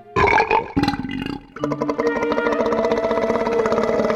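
Cartoon soundtrack: a loud, voice-like comic sound effect lasting just over a second, then background music with plucked notes starting about one and a half seconds in.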